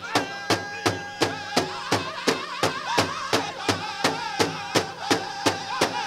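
Powwow drum group striking a large hand drum in a steady beat, about three strikes a second, with a high note held by a voice over the beat.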